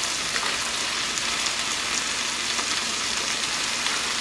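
A thin stream of hot boiling water pouring steadily into a plastic bowl of dry ramen noodle blocks, giving an even splashing hiss.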